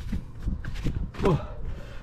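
A few light plastic clicks and knocks as the hinged control-panel cover on a ThermoTec heat pump is pushed shut, followed about a second in by a man's short 'whoa'.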